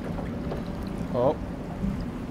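Catamaran's engine running with a steady low rumble while the anchor takes up on its bridle, as the crew check whether it is holding, with a man's short 'oh' about a second in.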